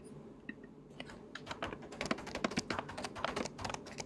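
Typing on a computer keyboard: a quick, uneven run of key clicks starting about a second in.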